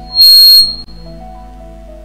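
A sudden, very loud, shrill high-pitched whistle-like squeal, held steady for under half a second starting about a quarter second in, over soft sustained background music.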